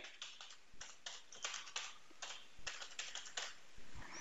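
Faint typing on a computer keyboard: a quick, uneven run of keystrokes spelling out a short phrase.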